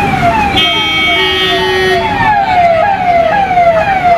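Police vehicle sirens wailing in a quick falling sweep that repeats a little over twice a second. A second, steady tone sounds over it from about half a second to two seconds in.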